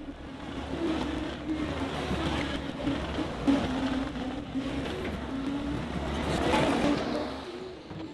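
John Deere 325G compact track loader's diesel engine running as the machine drives toward the camera, growing louder to about seven seconds in, then fading out near the end.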